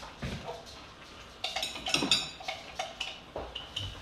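Kitchenware clinking and clattering in a short cluster a little after the start, with a light ring after the strikes, as more water is readied for a flour-and-water thickener.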